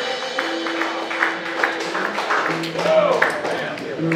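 Loose live-band sound: a held low instrument note, then a lower two-note figure, over scattered taps and some talk in the room.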